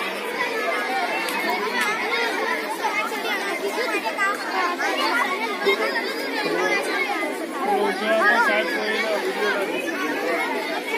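Many children's voices chattering at once, overlapping into a steady, continuous babble with no single voice standing out.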